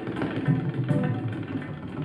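Indian fusion instrumental music: tabla playing a fast run of strokes over acoustic string instruments.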